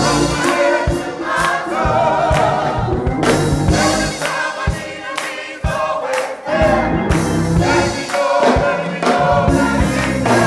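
Church choir of men and women singing gospel music over a steady beat.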